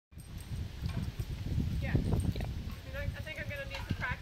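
Low rumbling noise on the microphone for the first two and a half seconds, then a voice speaking softly near the end.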